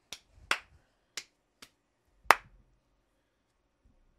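Five sharp finger snaps at irregular spacing, the loudest just past two seconds in.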